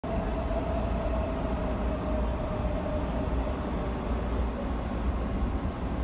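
Steady low rumble of a moving vehicle, with a faint tone that slowly drops in pitch over the first few seconds.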